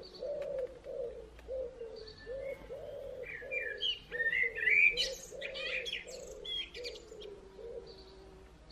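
Birdsong: one bird gives a run of low, short, arched notes, about two a second. A second, higher-pitched bird chirps busily over it from about two to seven seconds in.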